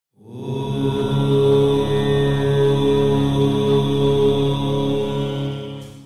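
A chanted mantra held as one long unbroken note, starting just after the beginning and fading out near the end.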